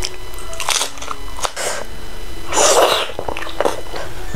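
Close-miked eating: biting into and chewing a piece of fried chicken coated in salted-egg sauce, in irregular bursts, the loudest about two and a half seconds in.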